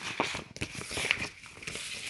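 Pages of a paper booklet being turned and handled, a run of small rustles and clicks.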